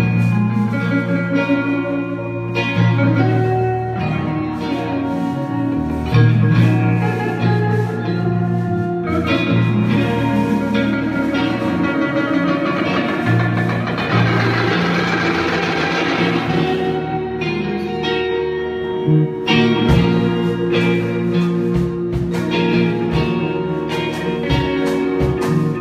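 Live band playing an instrumental passage on electric guitars, bass and drums, without vocals. A bright wash of sound swells up around the middle and fades again.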